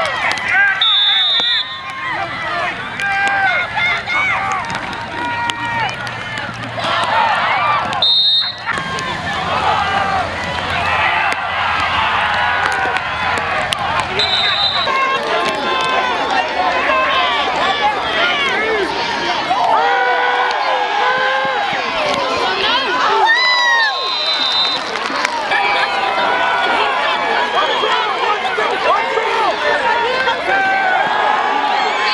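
Football crowd of spectators shouting and cheering, many voices overlapping throughout. Short high whistle blasts cut through four times, about a second in, at eight, fourteen and twenty-four seconds.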